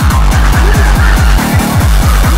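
Splittercore electronic music: a very fast, distorted kick drum pounding about seven times a second, each hit dropping in pitch, under a harsh, noisy synth layer.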